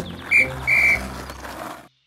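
Police whistle blown twice: a short high blast, then a longer one. The sound then cuts off suddenly.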